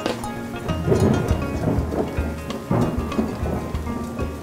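Thunderstorm sound effect: steady rain with several rolls of thunder, the loudest about a second in and again near three seconds.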